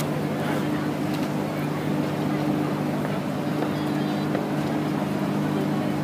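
A boat's engine running steadily, a low even drone with several fixed pitches, under the murmur of a crowd's voices.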